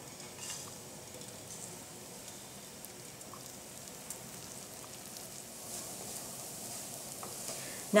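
Fresh breadcrumbs toasting in hot olive oil in a nonstick skillet: a faint, steady sizzle, with a spatula stirring and scraping through the crumbs.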